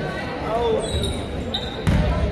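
Basketball dribbled on a hardwood gym floor, with short high sneaker squeaks and the voices of spectators; a sharp bang comes just before the end.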